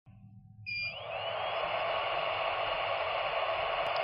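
Handheld dental LED curing light switched on for a composite cure: a short beep just under a second in, then a steady fan-like whir with a faint whine that rises briefly and levels off.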